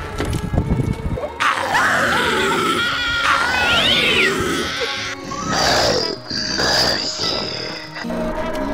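Screaming, with long falling and gliding cries, over background music, after a few low thumps at the start.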